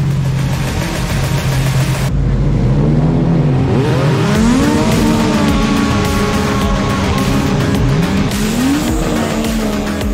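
Pack of racing jet skis at a race start: engines running steady on the line, then several revving up together about four seconds in and holding high as they accelerate away, with another rise near the end.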